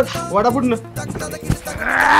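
Background music with a quavering bleat-like cry and voices over it, and a brief knock about a second and a half in.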